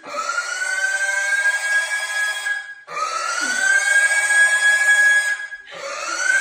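Pet pig screaming in protest while held and restrained to have its hoof nails trimmed. Long, loud, shrill squeals, each rising in pitch and then held for about three seconds, with a quick breath between them.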